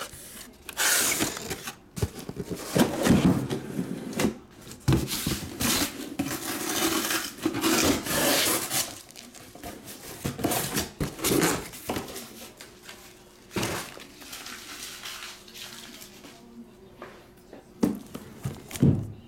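Cardboard shipping case and shrink-wrapped boxes being handled: flaps scraping, cardboard rubbing and boxes knocking as they are slid out and set down. A busy run of scrapes and rustles for the first half, then sparser knocks, quieter near the end.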